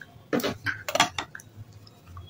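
A quick run of sharp clinks and knocks on stainless steel bowls, about six in a second, as the spoon and the clay slab strike the bowl while the slab is dipped in paste.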